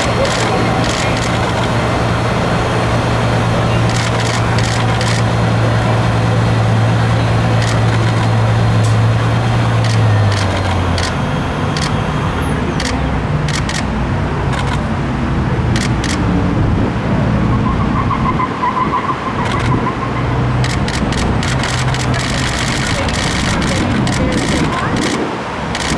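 A vehicle engine idling with a low steady hum that cuts out about ten seconds in, over street noise, scattered sharp clicks and people talking.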